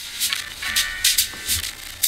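Failing KRK Rokit 5 studio monitor playing irregular bursts of harsh, crackling distortion, several a second, over faint music. The speaker has broken down.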